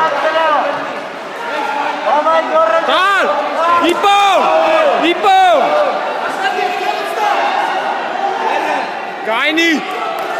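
Spectators shouting drawn-out calls of encouragement, several voices overlapping, with a group of loud shouts in the middle and another near the end. A crowd murmurs in the echoing sports hall.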